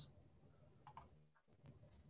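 Near silence, with a couple of faint computer-mouse clicks about a second in.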